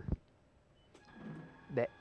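A short thump, then after a moment of silence the particulate filtration efficiency tester's air flow starting up faintly about halfway through, with a thin steady tone, as a test run begins.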